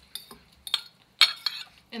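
Metal fork scraping and clinking against a ceramic plate as shredded chicken is pushed off it into a pot: a handful of short sharp clinks, the loudest a little over a second in.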